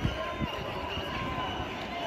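Several voices shouting and calling out across a playing field during an ultimate frisbee point, overlapping and too far off to make out words.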